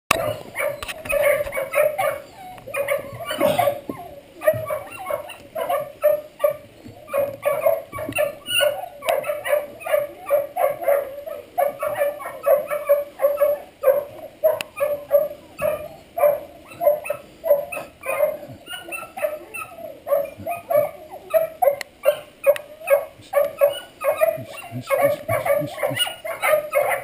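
Setter puppy yelping and whimpering repeatedly while being held and handled, about two short yelps a second without a break, with one louder, higher cry about three and a half seconds in.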